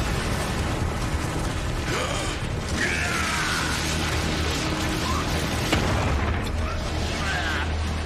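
Cartoon sci-fi sound effects: dense mechanical whirring and clanking over a steady low drone, with a few short sweeping electronic tones and a sharp click a little before six seconds in.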